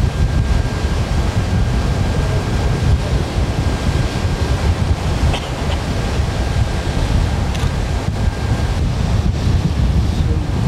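Wind buffeting the microphone with a steady low rumble, over the wash of the open sea. A faint thin high whine stops near the end.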